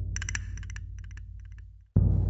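A low steady hum fading gradually and cutting off just before the end, with several short runs of quick, light clicks over it.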